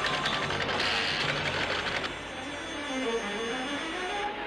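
Teleprinter printing: a fast, dense clatter of type strikes for about two seconds that stops abruptly, with music underneath that carries on after it.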